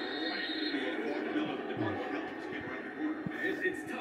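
Football game broadcast audio heard through a TV speaker: a steady din of stadium crowd noise while the commentators pause.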